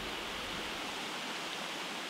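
Creek water running over rocks: a steady, even rush with no distinct splashes.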